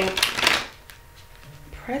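Tarot cards being shuffled: one short burst of about half a second at the start, then quiet.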